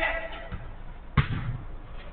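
A football struck hard, a single sharp thud a little over a second in, during a five-a-side game on artificial turf.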